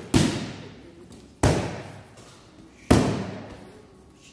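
Boxing gloves striking focus mitts: three sharp smacks about a second and a half apart, each ringing out in a large, echoing room.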